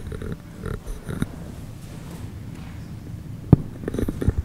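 Low rumbling handling noise and scattered knocks from someone moving about near an open microphone, with a sharp thump about three and a half seconds in.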